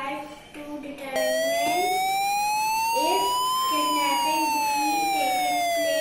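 Phone app's kidnapping-detection alarm sounding: a single buzzy electronic siren tone that starts about a second in. It rises slowly in pitch for about two and a half seconds, then falls for about two.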